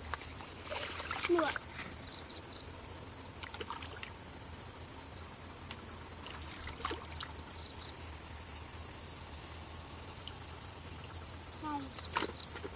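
Steady high-pitched chirring of insects, with a few faint splashes of hands groping in shallow muddy water.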